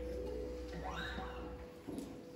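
The last chord of a live band's song dying away: a single held note rings on quietly over a low bass tone, and the bass cuts off about three-quarters of the way through.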